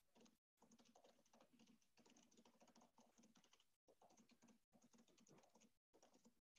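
Faint computer keyboard typing, a run of quick key clicks. The audio cuts out completely for short moments several times.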